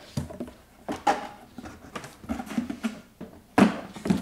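Large cardboard box being handled and shifted on a countertop: cardboard scraping and rustling with a few knocks, the loudest about three and a half seconds in.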